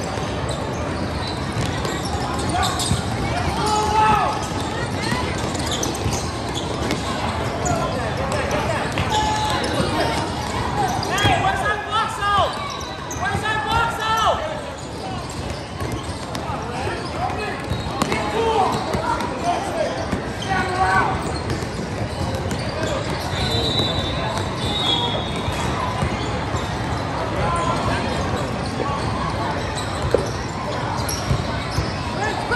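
A basketball being dribbled and bouncing on a hardwood-style court, with sneaker footsteps and the shouts and chatter of players and spectators echoing through a large hall.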